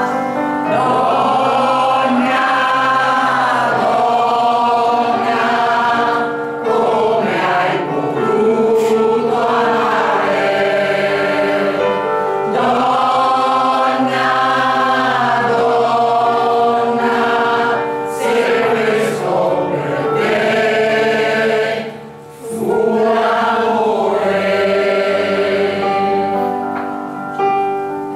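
Mixed choir of women and men singing a song in sustained phrases, with a short break about six and a half seconds in and a deeper pause for breath about 22 seconds in.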